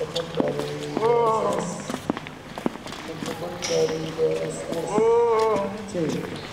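A voice vocalizing without words in long held, rising-and-falling notes, about a second in and again near the end, with footsteps.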